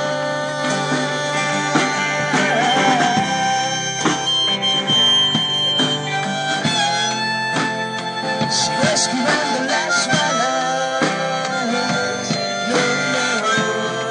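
Live rock band playing an instrumental break: a harmonica solo with bending, held notes over guitars and drums.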